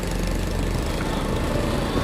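Steady motorbike engine and road noise while riding in light city traffic.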